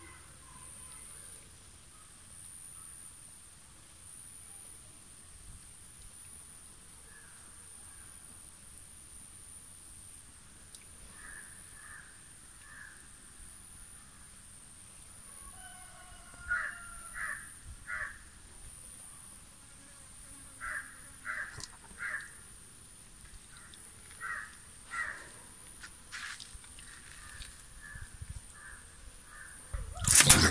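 Crows cawing in runs of two or three calls over a steady high-pitched insect drone; the calls begin about a third of the way in and come more often in the second half.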